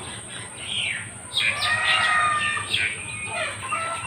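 Birds chirping and calling, with a louder run of overlapping calls starting about a second and a half in.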